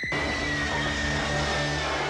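Window glass smashing with a sudden crash, over a loud sustained movie-trailer sound effect and music sting with one held high note that sinks slightly.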